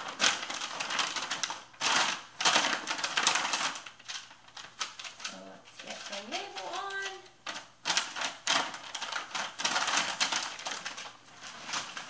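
A Tyvek mailing envelope and paper shipping labels rustling and crinkling as they are handled, in repeated short bursts.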